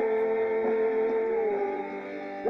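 Live worship-band music: a long held note or chord that eases slightly lower and fades toward the end.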